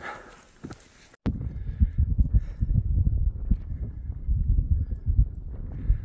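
Loud low rumble of wind buffeting the phone's microphone in irregular gusts, starting suddenly about a second in after a short quiet stretch.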